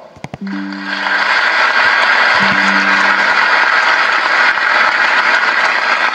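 Large audience applauding steadily, the clapping swelling up about a second in and holding, with a few held low musical notes under it early on.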